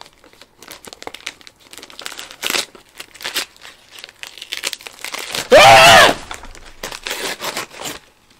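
Plastic packaging and cardboard crinkling and tearing in irregular rustles as a mail package is opened by hand. A bit past halfway, a loud, short pitched sound rises and falls in pitch.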